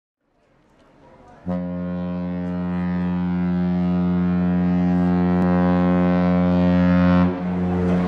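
Ship's horn sounding one long, deep, steady blast. It starts about a second and a half in and dips briefly near the end before sounding again.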